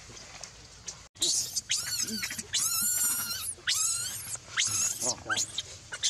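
Baby macaque screaming: a run of shrill, high-pitched cries starting about a second in, the longest held for about a second, then shorter, lower cries near the end.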